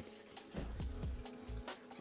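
Faint background music over quiet water trickling as a green hose siphons water and debris out of a reef aquarium.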